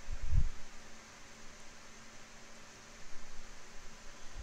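Electric room fan running on high: a steady hiss with a faint hum. A couple of soft low bumps come through, one just after the start and another about three seconds in.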